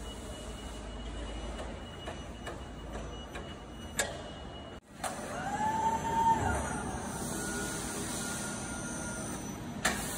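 Steady machine hum of an automated sheet-metal punching cell, with a sharp click about four seconds in. Just after halfway, an electric drive motor whine rises, holds and falls as the Prima Power vacuum sheet loader moves its suction plate down onto a stack of steel sheets, then a steady hum, and a click near the end.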